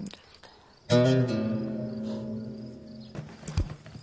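Background score: a single low musical note starts suddenly about a second in, is held and slowly fades out after about two seconds, followed by a few faint knocks.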